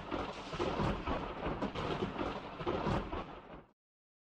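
Thunder sound effect: a crackling roll of thunder with a heavy low rumble and many sharp cracks, cutting off suddenly just before the end.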